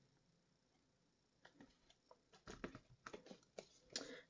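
Near silence, broken by faint scattered taps and rustles of a paper card being handled and pressed by hand, starting about a second and a half in and coming more often in the second half.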